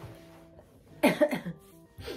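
Faint background music with held notes, and a woman's short vocal burst, like a cough or throat-clearing, about a second in.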